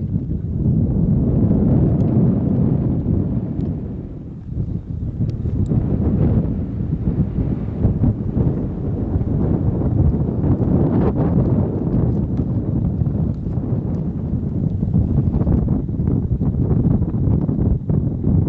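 Wind buffeting the microphone: a steady low rumble that dips briefly about four seconds in.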